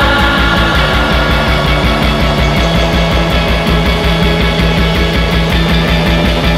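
Psych rock band playing, with guitar over a steady, driving drum beat and pulsing bass.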